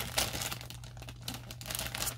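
Yarn packaging crinkling and rustling as it is unwrapped by hand, a dense, continuous crackle.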